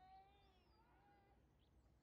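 Near silence: faint outdoor ambience with one faint, drawn-out animal call that wavers in pitch over the first second and a half.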